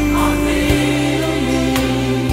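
Gospel song playing: sung voices hold one long note that steps down in pitch about two-thirds of the way through, over the backing band.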